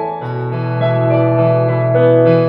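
Digital piano played solo: a low bass note struck just after the start and held under ringing chords, with a new higher note added about a second in.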